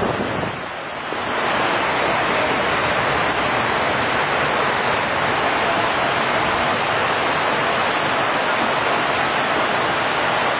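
Muddy floodwater rushing down a street as a torrent, a steady wash of water noise with rain falling; the level dips briefly about a second in.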